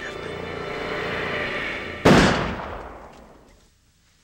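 Background music building, then a single loud gunshot about two seconds in, its echo dying away over about a second and a half.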